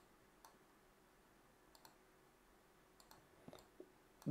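Near silence broken by a few faint, scattered clicks of a computer mouse.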